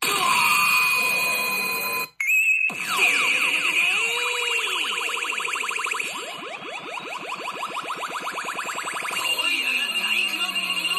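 Daiku no Gen-san pachinko machine playing its electronic effects and music. The tones start suddenly, cut out briefly about two seconds in, then give way to a long fast run of repeated synthesized chirps that builds toward the end.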